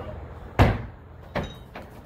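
Medicine ball dropped onto a rubber mat: one heavy thud a little over half a second in, then a lighter second thud under a second later.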